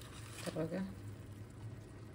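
A ladle of vegetable stew poured onto torn thin wheat bread (qursan) in a steel pot, making a soft wet squish, under a low steady hum. A short murmur of voice about half a second in is the loudest sound.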